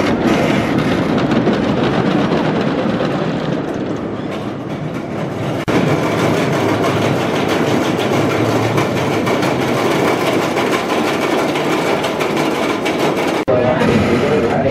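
GCI wooden roller coaster train running over its wooden track: a steady, loud rumble and clatter of wheels. The sound breaks off and resumes abruptly about six seconds in and again near the end.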